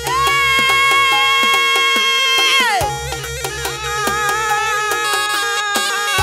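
Karo Batak gendang music for the bridal procession. A held, reedy melody line in the sarune style plays over regular drum strokes and a pulsing low beat, and the melody slides down about halfway through.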